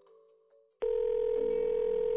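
Telephone ringback tone: one steady ring of the line, starting abruptly just under a second in and holding level. It is the call ringing through, not yet answered.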